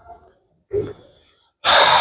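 A short pause with faint small sounds, then a loud rush of breath into the microphone for under a second near the end.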